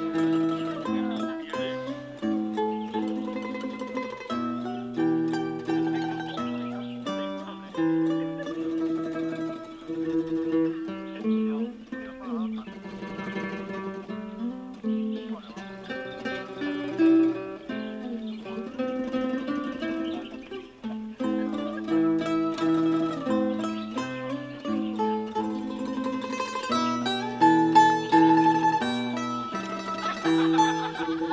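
Instrumental background music: a melody of clear notes over a moving bass line, with no speech.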